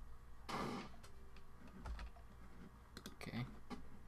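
Computer keyboard and mouse clicks while editing at a Mac, with one short rushing burst of noise about half a second in and a cluster of clicks around three seconds in.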